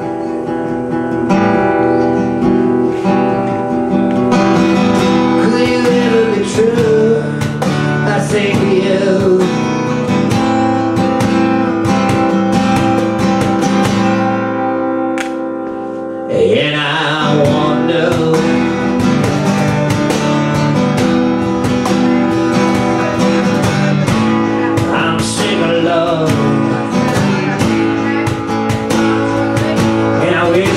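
Live acoustic guitar played hard and rhythmically over cajón hand percussion, an instrumental passage with no lyrics. About halfway through the accompaniment briefly thins out, then the strumming and drumming come back in full.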